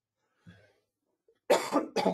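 A man coughs loudly, starting about one and a half seconds in, after a near-quiet stretch.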